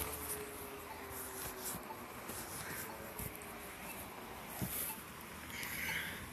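Street traffic noise, with a faint steady tone sliding slowly down in the first two seconds and a couple of light knocks; a vehicle passes, swelling near the end.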